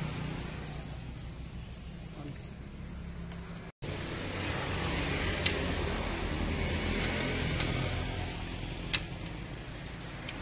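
A long wrench tightening cylinder head bolts on a single-cylinder diesel engine, with two sharp metallic clicks, the louder one near the end, over a steady low mechanical hum. The sound cuts out for an instant just before four seconds in.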